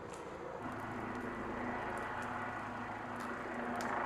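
A motor vehicle's engine running steadily nearby, a constant hum over a hiss, which gets louder about half a second in, with a few faint sharp crackles.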